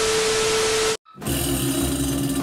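TV-static glitch sound effect: a loud hiss of white noise with a steady beep tone that cuts off suddenly about a second in. After a short gap, a steady lower hum with hiss follows.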